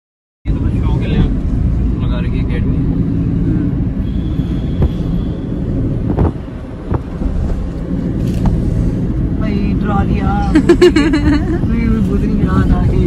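Steady low rumble of road and engine noise inside the cabin of a moving Toyota car, with indistinct voices near the end.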